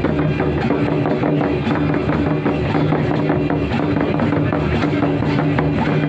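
Several hand-played barrel drums (Santhali tumdak') beaten in a fast, dense rhythm, with a steady held tone underneath.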